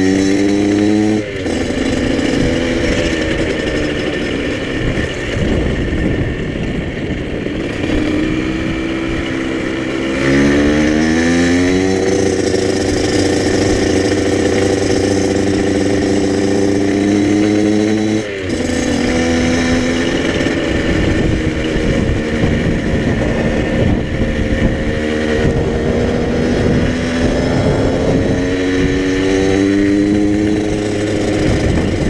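Small orange supermoto-style motorcycle being ridden, heard from the rider's seat. Its engine note climbs in pitch as it accelerates, drops sharply about a second in and again a little past halfway, then holds and climbs again near the end.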